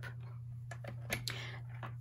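Faint handling of paper sheets on a paper trimmer: a few light taps and a brief soft rustle a little past the middle, over a steady low hum.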